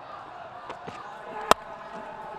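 Cricket bat striking the ball once with a sharp crack about one and a half seconds in: the batter drives a full delivery with the full face of the bat. Under it runs a steady murmur from the ground.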